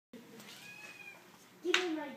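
A kitten mewing: a faint, thin, high call about half a second in, then a louder call that starts sharply near the end.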